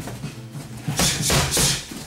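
Punches and a round kick striking Thai pads during a Muay Thai pad combination, the loudest hits coming from about a second in.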